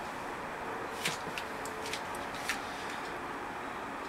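Steady background hiss with a few faint, short clicks and taps from handling, mostly between one and two and a half seconds in.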